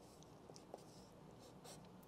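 Faint sound of a pencil writing on a paper sheet, with a few light ticks as it marks the page.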